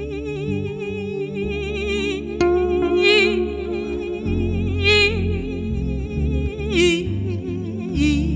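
Live band music: a woman singing long, wavering notes with a wide vibrato, swelling louder a few times, over keyboard chords and electric bass.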